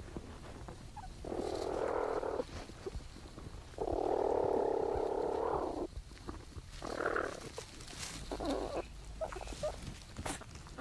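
Platypus young suckling from their mother inside the nesting burrow, heard through a microphone in the chamber. There are several harsh, noisy bursts: one about a second long, a longer one of about two seconds, then two short ones near the end.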